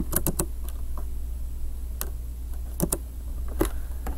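Computer keyboard and mouse clicks: a quick run of keystrokes just after the start, then single sharp clicks at wide gaps, the last near the end. A steady low electrical hum runs underneath.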